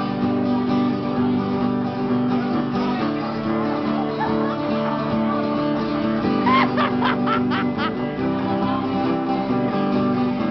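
Live Irish jig tune played on strummed acoustic guitar, with a steady level throughout. About six and a half seconds in, a brief flurry of sharp sounds cuts through the music.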